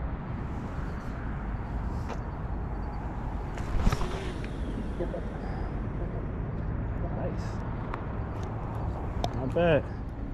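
A catfish rod being cast out with a three-way rig: one sharp snap about four seconds in, over a steady low outdoor rumble.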